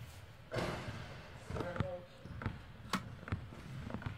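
A basketball bouncing on a hardwood court, a handful of separate, irregularly spaced bounces through the second half.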